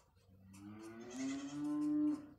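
A man's voice holding one long, drawn-out vocal sound, a hum or stretched vowel, that rises slightly in pitch and lasts most of two seconds.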